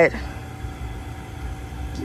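Low, steady background rumble with a faint steady hum, and no clear events.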